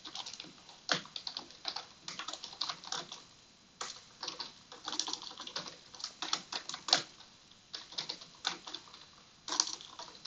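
Computer keyboard typing: quick, irregular runs of keystroke clicks broken by a few brief pauses.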